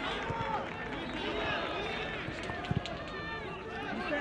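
Footballers shouting and calling to each other on the pitch, the voices carrying in a near-empty stadium, with two sharp ball-kick thuds about two-thirds of the way through.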